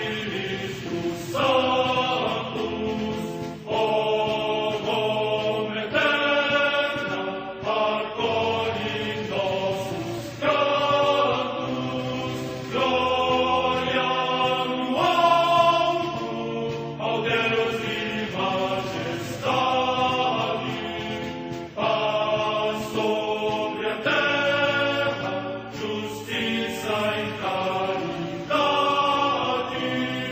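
Choral chant music: voices singing together in long, held phrases that change pitch every second or two.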